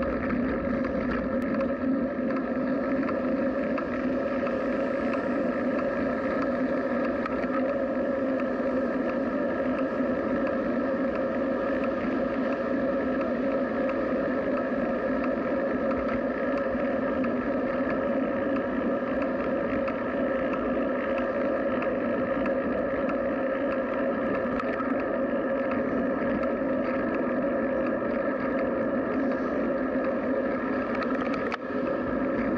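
Steady, even rushing noise picked up by a camera on a moving bicycle: wind and road noise while riding at around 20 km/h, with a constant hum-like drone underneath.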